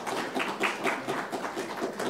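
A small congregation applauding after the closing piano music, with claps coming about four or five times a second.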